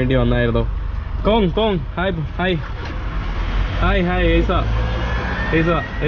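Voices talking in short phrases over a steady low rumble.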